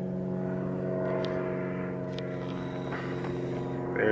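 Vehicle engine idling: a steady low hum that holds one pitch, with a few faint ticks over it.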